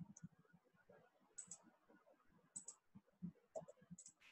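Faint computer mouse clicks, several in quick pairs, over near-silent room tone.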